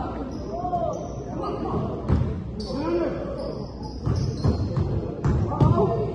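Basketball bouncing on a hardwood gym floor during play: several separate thuds with the hall's echo, over voices shouting.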